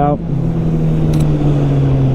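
Kawasaki Z800's inline-four engine running at steady revs, a constant low drone.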